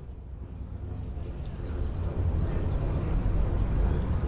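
Wind rumble on the microphone and road noise from a folding bike riding along a street, growing louder. A bird chirps a quick run of about seven notes just before halfway, with a few more chirps after.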